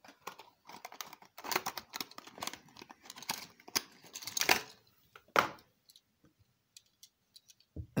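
Clear plastic packaging of a diecast model car being handled and opened: a run of irregular crinkles and plastic clicks, densest in the middle, ending with one sharp click about five seconds in, then a few faint ticks.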